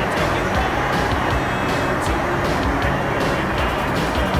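Steady, loud cabin noise of an aircraft flying zero-G parabolas: engine and airflow rumble inside the padded cabin, with music over it.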